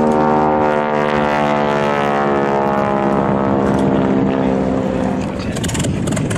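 A single-engine piston warbird flying overhead. Its engine note sinks slowly in pitch as it passes, then fades about five seconds in.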